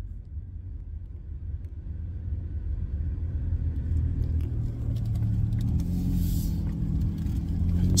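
Car interior noise: a steady low engine and road rumble that grows gradually louder, as when the car gathers speed.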